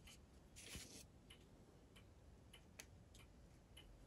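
Near silence, with a few faint light ticks from small hand tools being handled on paper.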